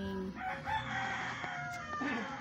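A rooster crowing once: a single long call of about a second and a half.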